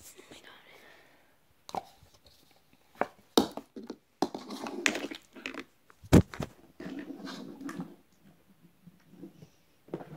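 Handling noise from a handheld camera being moved about and set down facing up: rubbing and rustling with several sharp knocks, the loudest about six seconds in.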